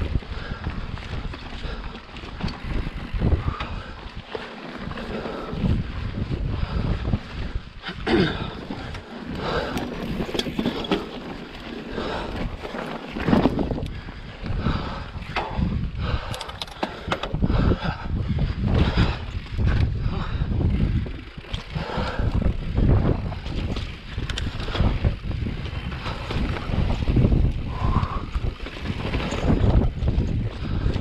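Mountain bike rolling fast down bumpy slickrock: wind buffets the camera microphone, and tyres on rock and the bike's chain and frame clatter in frequent knocks.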